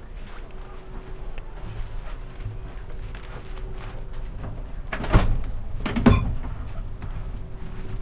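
Two short thumps about a second apart, over a steady low hum.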